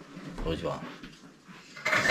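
A green parrot gives a short, speech-like vocalisation about half a second in. A louder sound starts just before the end.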